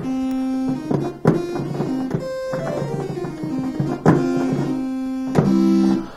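A simple software synthesizer tone, Reaper's built-in ReaSynth played live from a USB MIDI keyboard controller: a short run of single notes, some held about a second, others quicker.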